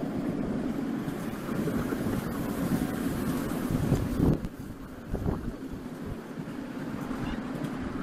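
A ride-on miniature steam railway train rolling along the track, heard from an open carriage as a steady rumble, with wind buffeting the microphone. The sound drops somewhat about halfway through.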